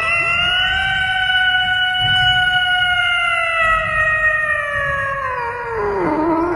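Domestic cat giving one long, drawn-out meow close to a microphone, held almost level in pitch for about five seconds and then falling away near the end.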